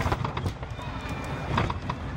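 Boeing 737-800 cabin rumble broken by two bursts of knocks and rattles, one just at the start and one near the end, as the main gear touches down on the runway and the ground spoilers deploy.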